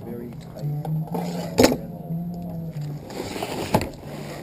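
Faint background chatter of people talking, with two sharp clicks, one midway and one near the end.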